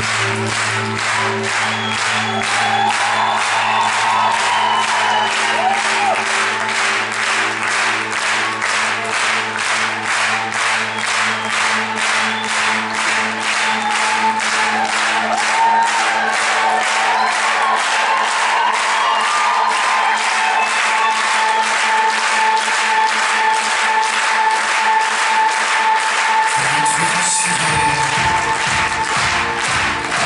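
Concert audience clapping in time, about two claps a second, over held keyboard chords. Near the end the chords stop and the band starts a new phrase.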